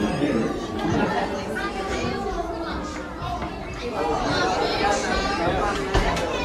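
Indistinct chatter: several people's voices talking throughout.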